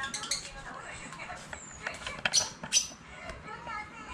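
Indistinct voices in the background, with a few sharp clicks and taps. The loudest clicks come a little past two seconds in.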